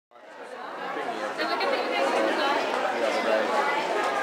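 Crowd chatter: many people talking at once, fading in over the first second or so and then holding steady.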